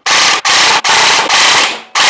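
Custom electric gel blaster with a V2 gearbox and 12:1 high-speed gears firing on full auto: four short bursts in quick succession, each about half a second, with brief pauses between. The fire rate is very fast.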